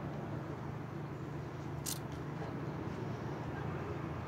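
Steady low hum of street traffic, with a single short click about two seconds in.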